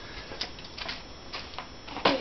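Footsteps on a concrete floor: a handful of light, irregular taps.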